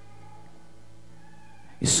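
A quiet pause with a few faint, drawn-out tones, then a man's loud preaching voice breaks in with a hissing start near the end.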